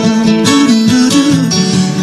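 Bluegrass band playing, with acoustic guitar strumming and plucked strings carrying an instrumental passage between sung lines.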